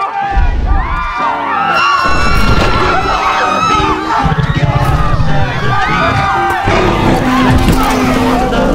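Film soundtrack: a crowd of many people shouting and screaming at once over a sustained orchestral score.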